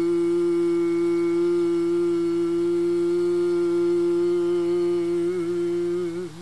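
A man's voice holding one long sung note, unaccompanied and steady in pitch, breaking into vibrato about five seconds in, as the song's closing note.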